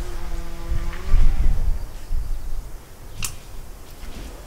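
A woman's drawn-out hesitation sound held at one pitch for about the first second, then a low rumble and a single sharp click about three seconds in while she handles a short piece of tie wire.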